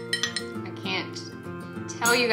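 A spoon clinking against a ceramic mug as tea is stirred: a quick run of light clinks, over soft acoustic guitar music.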